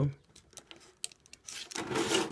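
Utility knife blade scraping along a clear polycarbonate RC body, with faint ticks and a click, then a louder scratchy crinkling of the flexing plastic from about one and a half seconds in.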